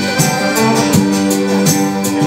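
Live acoustic band playing an instrumental passage: strummed acoustic guitars in a steady rhythm over sustained accordion chords.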